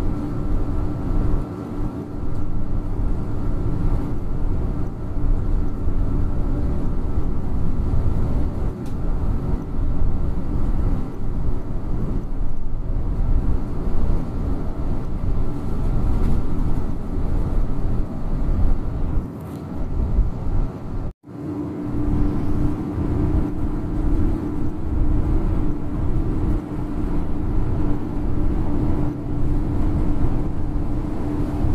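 Inside a Yutong coach cruising on a motorway: steady engine drone and tyre rumble with a constant hum. About two-thirds of the way through, the sound drops out for an instant, then carries on.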